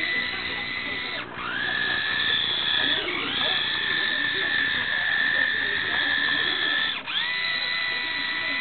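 Small electric motor and gear train of a radio-controlled toy car whining steadily at a high pitch. Twice, about a second in and near the end, the whine dips sharply and climbs back up as the motor slows and speeds up again.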